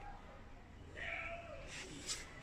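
A single short, faint call about a second in, rising and then falling in pitch.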